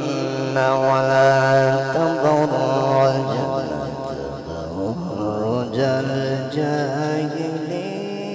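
Male qari reciting the Quran in a melodic, drawn-out tilawat style into a microphone, holding long notes with wavering ornamental turns and sliding between pitches.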